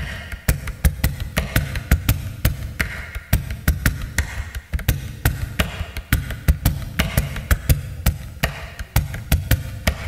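Acoustic guitar played as a drum: both hands slapping and tapping the wooden top and body in a quick, busy rhythm of sharp taps over low thumps.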